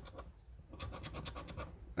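A coin scratching the latex coating off a scratchcard in quick back-and-forth strokes, about ten a second, which get going about half a second in.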